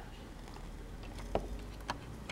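Two short clicks of plastic Lego pieces being handled, over a low room hum.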